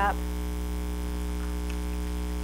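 Steady low electrical mains hum with a faint buzz above it, unchanging throughout.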